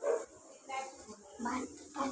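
A dog barking in several short barks, about half a second apart.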